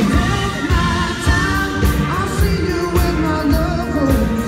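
Live rock band playing with a male lead voice singing over electric guitar and a steady drum beat of about two hits a second.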